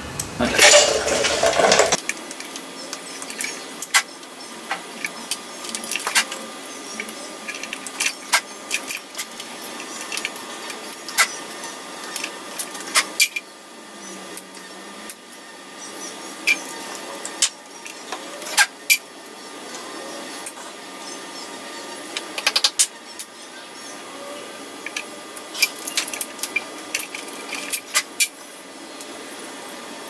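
Irregular small metallic clicks and clinks, a few at a time with gaps between, as hand tools and loose metal parts are worked against a metal shaper's gearbox casing. There is a louder burst of noise in the first two seconds.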